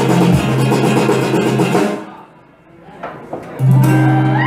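Live acoustic-electric guitar and drum kit playing together, stopping abruptly about two seconds in. After a short near-quiet gap, a steady low tone comes in loudly near the end.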